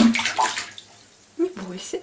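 Bath water splashing and sloshing in a bathtub as a swimming cat paddles, mostly in the first second.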